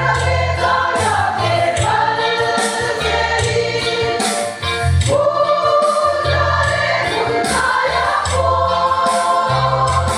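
Large women's choir singing a hymn in unison, with a big laced drum (a Mizo khuang) beaten in time underneath, its low beats coming about once a second.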